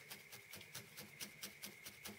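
A felting needle stabbing repeatedly into wool roving: faint, rapid pokes at about seven a second.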